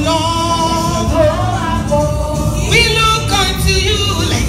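Live gospel music: voices singing held, gliding notes over a continuous instrumental accompaniment with a strong bass.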